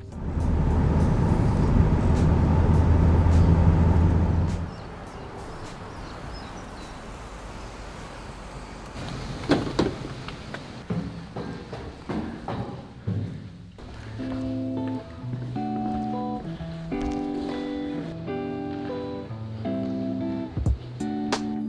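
Car engine and road noise heard from inside the cabin for about four and a half seconds, cutting off suddenly. Then a quieter stretch with a few clicks and knocks as a door is pushed open. From about two-thirds of the way through, background guitar music plays.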